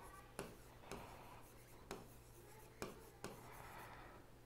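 Faint taps and short strokes of a stylus writing on an interactive whiteboard, about five light touches spread over four seconds, over low room hum.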